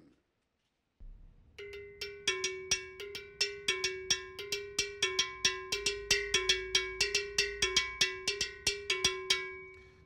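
Large West African agogo bell struck with a stick, playing a repeating timeline pattern: a steady run of sharp ringing metal strokes, starting about a second in and stopping just before the end.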